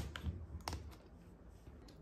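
A few light clicks and taps of a flat, hard object being picked up off a wooden tabletop and laid down on a stack of eyeshadow palettes, mostly in the first second.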